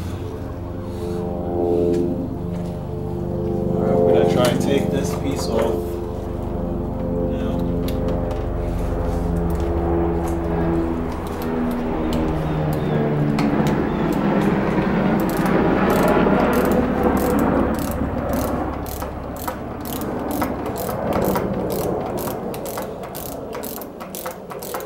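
Background music, with a hand ratchet clicking in quick, steady runs from about halfway through as bolts on a motorcycle's front brake master cylinder are undone.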